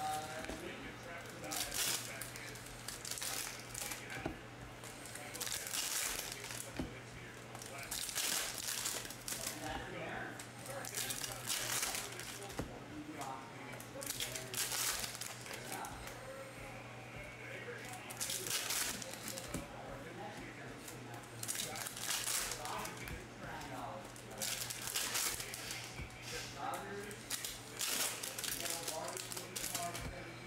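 Foil trading-card pack wrappers crinkling and glossy chrome cards sliding against one another as packs are torn open and flipped through by hand, in short rustling bursts every second or two. A steady low hum runs underneath.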